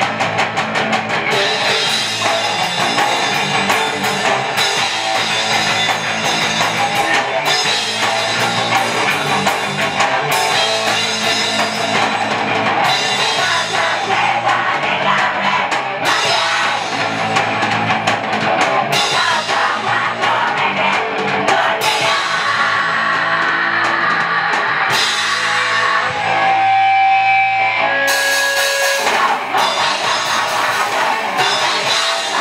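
Live heavy rock band playing loud: distorted electric guitars, bass and drum kit, with a vocalist on the microphone. Near the end the full band breaks off for a couple of seconds, leaving a few held notes, then comes back in.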